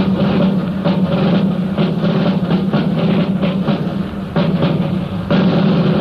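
Instrumental break of a 1960s recorded song: the band plays on with a steady drum beat and no singing.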